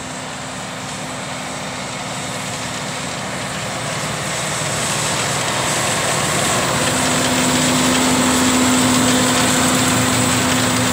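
A John Deere 6215R tractor's six-cylinder diesel engine working under load as it tows a Väderstad NZ Aggressive tine cultivator through the soil. It grows steadily louder as the tractor comes up and passes close, and its steady hum is strongest in the last few seconds.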